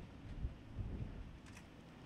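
Wind buffeting a handheld microphone: a low, gusty rumble that swells and eases, with stronger gusts about half a second in and again just after one second.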